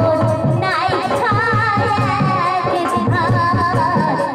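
A woman singing a Bhawaiya folk song into a microphone, holding long notes with a strong wavering ornament, over a steady drum rhythm. A new sung phrase starts under a second in.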